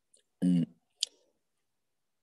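A single short spoken syllable, then one sharp click about a second in, with dead silence between and after.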